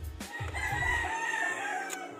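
A rooster crowing once, one long call lasting about a second and a half.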